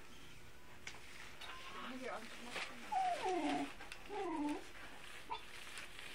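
A dog gives two drawn-out whining calls about a second apart, each falling in pitch.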